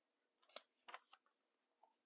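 Near silence, with a few faint, brief rustles of a paperback guidebook's page being turned between about half a second and a second in.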